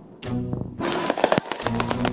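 Music with steady low pitched notes, and several sharp firework bangs and crackles from about a second in as aerial shells burst.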